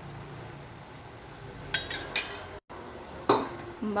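A metal ladle clinking against a stainless steel soup pot as sliced red chilies are tipped in: a few sharp clinks about two seconds in, the loudest near the middle, then another knock a second later after a brief gap of silence.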